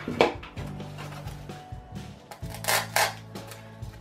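Background music with steady sustained notes, with a few short clicks and rustles of handling as an artificial flower stem is glued and placed.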